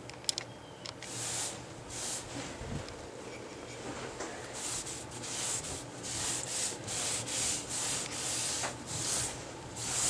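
Cloth rag rubbed in repeated strokes over a wet-stained wooden desktop, each stroke a short swish. The strokes come faster in the second half, about one and a half a second.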